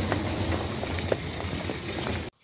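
Outdoor noise with a steady low rumble, and a few light clicks of footsteps on concrete paving stones.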